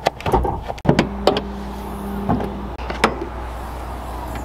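Pickup truck's hood-release lever being pulled, followed by a series of sharp clicks and clunks from the hood latch and the hood being opened. A low steady hum runs through the middle.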